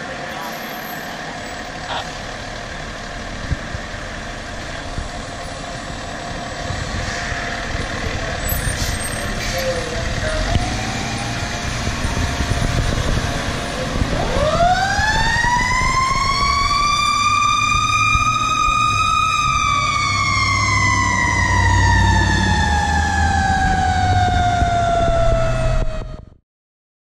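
A fire engine's engine running and building as the truck pulls out. About halfway through, a Federal Q mechanical siren winds up steeply to a high peak over about five seconds, then slowly winds down, still sounding when the audio cuts off.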